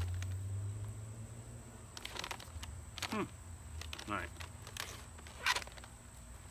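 A snack pouch of jerky and trail mix handled and torn open by hand: a few short crinkles, with the loudest, sharpest one about five and a half seconds in.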